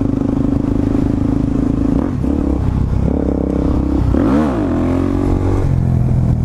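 A 2009 Suzuki DR-Z400SM supermoto's single-cylinder four-stroke engine under way at a steady pitch. About two seconds in the note shifts, around four seconds in the revs swing sharply up and back down, and near the end it settles at a lower, steady pitch as the bike rides a wheelie.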